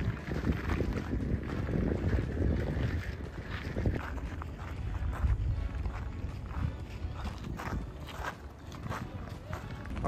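Outdoor ambience: other people's voices in the background over an unsteady low rumble of wind on the microphone.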